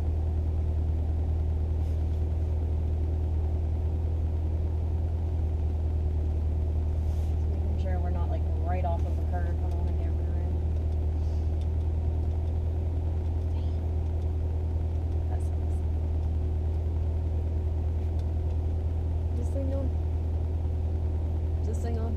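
2015 Corvette Stingray Z51's 6.2-litre V8 idling, heard inside the cabin as a steady low rumble with a faint steady hum above it.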